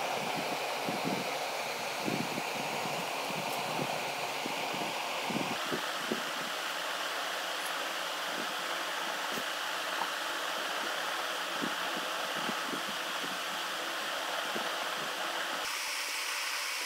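Steady background whir of room noise, like a running fan, whose tone shifts about a third of the way through and again near the end. Faint taps and rustles come from the cloth dress being handled.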